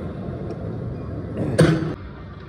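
A man's short, loud grunt of effort breathed out through pressed lips about one and a half seconds in, over a steady background.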